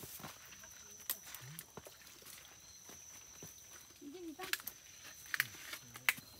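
Quiet night ambience: a steady high-pitched insect tone with scattered footsteps and clicks of people walking through vegetation, and a few faint, brief murmured voices.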